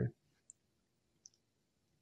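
A near-silent pause with two faint, short clicks about three-quarters of a second apart.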